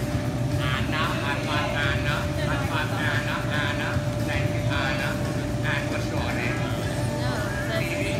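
Young children's high voices chattering and calling in short bursts over a steady low hum that carries a thin constant tone.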